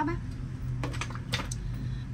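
A few light clicks and taps about a second in as leather dress shoes are handled and set down on a wooden table, over a steady low hum.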